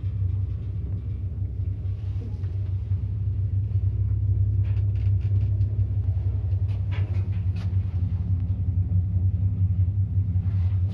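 Cabin of a 1989 MLZ passenger lift travelling in its shaft: a steady low hum and rumble from the moving car and its drive, with a few light clicks and knocks along the way.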